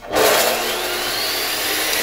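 DeWalt chop saw's motor started through a wired-in Hitachi 371468 soft-start module, spinning up with a rising whine and then running steadily at full speed. It comes up to speed quickly, not as jumpy as a hard start but still not smooth.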